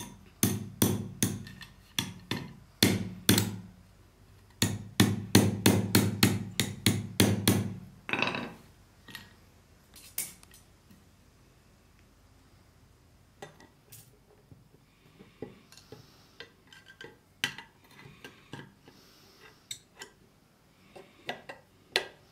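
Hammer blows on a rusty steel lock case held against a wooden log, in two quick runs of about three strikes a second with a short pause between them. After that come only faint, scattered taps and clicks.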